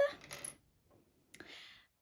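A single light click of a small hard plastic item set down on a wooden tabletop, a little over a second in, followed by a brief faint handling rustle.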